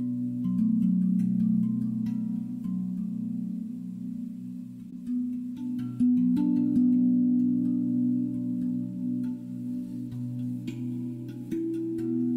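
Soft ambient meditation music of sustained low drone tones, shifting to new notes every few seconds, with a fresh, slightly louder note about six seconds in.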